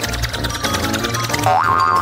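Background music with rapid, even ticking as a prize wheel spins, then a short rising tone near the end.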